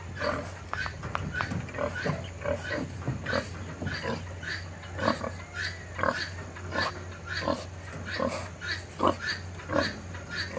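Berkshire boar grunting in short, irregular grunts, about two or three a second.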